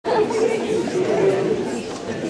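Many people talking at once in a church, a congregation's steady chatter with no one voice standing out.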